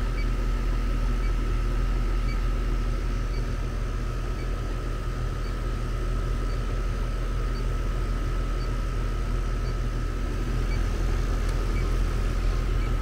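Outdoor air-conditioning condenser unit running with a steady low hum and a thin steady whine, with a faint high tick about once a second.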